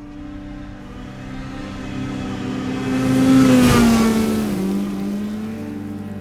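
A car passing by: its engine and road noise build up to a peak about three and a half seconds in, and the engine's pitch falls as it goes past. A low steady hum runs underneath.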